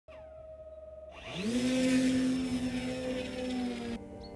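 An intro sound effect: a falling tone, then about a second in an electric motor whine spins up with a quick rise in pitch and a rush of air, and holds steady.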